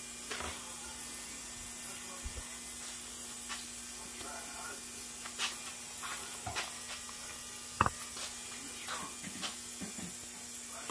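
Steady hum and hiss of an ultrasonic parts cleaner running, with a few scattered light clicks and taps of hand tools and parts being handled on the outboard. The sharpest tap comes about eight seconds in.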